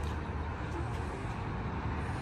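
Steady outdoor background noise, a low rumble with a faint hiss above it.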